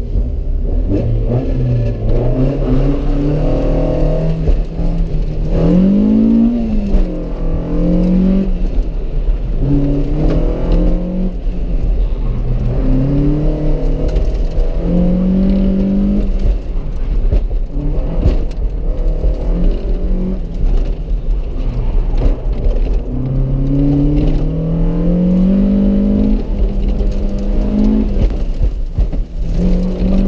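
Honda CRX engine heard from inside the cabin, revving up and falling back again and again as the car accelerates and slows through the cones, with one long climb in pitch about two-thirds of the way through. A steady low rumble of road and wind noise runs underneath.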